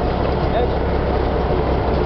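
A Russian timber truck driving, its engine and running gear making a loud, steady rumble with a constant low drone, heard from riding on the truck's open back.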